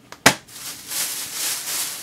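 Books being handled: one sharp knock as something is set down about a quarter second in, then rustling and handling noise that swells and carries on.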